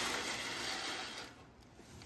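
Decorative fireplace crystals rustling and clinking as a hand spreads them in an electric fireplace's ember tray, with a plastic bag crinkling. The sound dies down about a second in.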